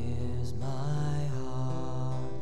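Worship band music: a held chord over a steady low bass note, with a wavering higher tone in the middle of it.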